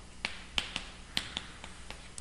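Chalk on a chalkboard while writing: about seven sharp, irregular ticks and taps as the stick strikes and lifts off the board.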